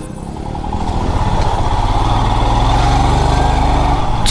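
Motorcycle engine running while riding, growing louder over the first couple of seconds and then holding steady.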